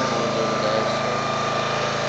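A small engine running at a steady speed, with a constant drone and a thin steady whine.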